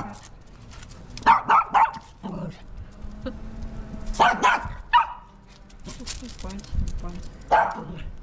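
Small dog barking in short, sharp bursts while it tries to get a cat to play: three quick barks about a second in, a few more around the middle, and one near the end.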